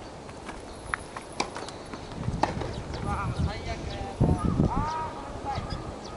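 Tennis court sounds: a few sharp knocks of a tennis ball in the first half, then short squeaky tones and voices, with low thuds, in the second half.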